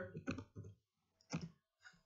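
Computer keyboard being typed on: about four separate key clicks, spaced irregularly.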